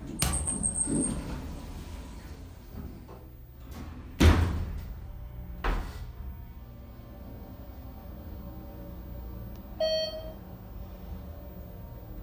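2012 ThyssenKrupp hydraulic elevator in operation, heard from inside the cab. A button press with a high beep lasting about a second, then the doors sliding shut with a loud thud about four seconds in and a smaller knock shortly after. The car rides with a low steady hum, and a single chime sounds near the end as it reaches the floor.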